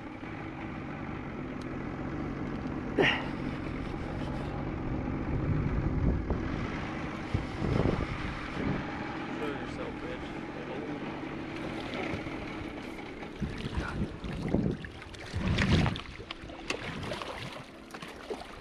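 Boat's outboard motor running steadily at low speed while a snagged paddlefish is reeled in. A few louder whooshes come through about 8 seconds in and again near the end.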